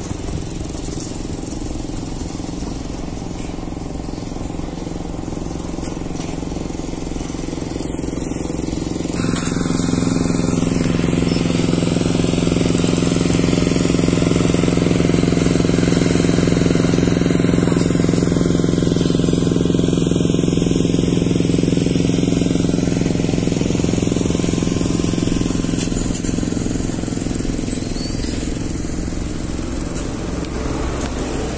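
An engine running steadily with a low, even hum that grows louder about nine seconds in and eases off after about twenty-five seconds.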